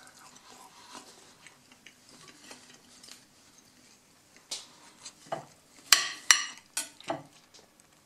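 A kitchen knife cutting a breaded chicken schnitzel on a ceramic plate. The first half holds faint handling sounds; then the blade clicks and scrapes against the plate several times, the loudest two strokes about six seconds in.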